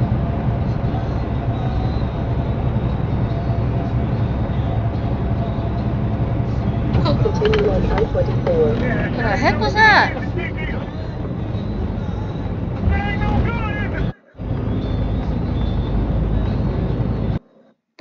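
Steady low road and engine noise inside a semi-truck cab, with a voice speaking briefly about halfway through. The sound drops out for a moment twice near the end.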